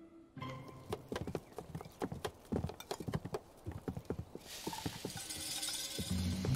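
A kitchen knife chopping on a wooden board in quick, irregular knocks, then food sizzling in hot oil from about four and a half seconds in, over background music.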